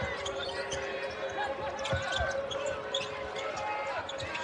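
Basketball game sound on a hardwood court: the ball being dribbled in short knocks, with sneakers squeaking and the arena crowd's steady noise underneath.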